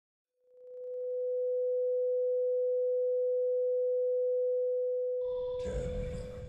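Steady single-pitch sine test tone of the kind played over colour bars, fading in over the first second. About five seconds in it gives way to a sudden noisy, rumbling burst.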